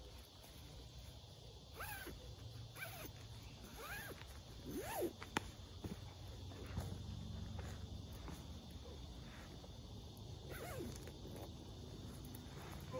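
Soft rustling of a lightweight synthetic sleeping bag and foam pad as a person climbs into the bag and settles down. Several short rising-and-falling animal calls and a faint steady insect hum sound in the background.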